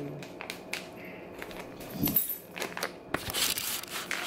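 A plastic Uncle Ben's Ready Rice pouch being crinkled and torn open by hand: a run of sharp crackles and tearing, with a short vocal sound about halfway through.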